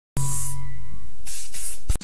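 Sound effect under an animated logo intro: a steady hiss over a low hum. It starts abruptly and cuts off just before the end.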